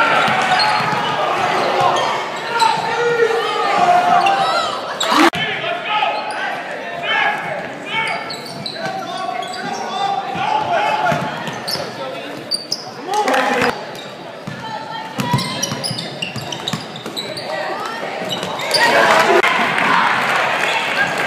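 Basketball game sounds in a school gym: a ball dribbling and bouncing on the hardwood floor, with players' and spectators' voices echoing around the hall. There is a sharp knock about five seconds in, and the crowd gets louder near the end.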